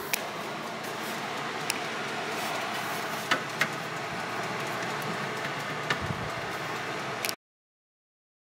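Hooded hair dryer's blower running steadily while a wig-cap bald cap sets under it, with a few faint clicks. The sound cuts off suddenly near the end.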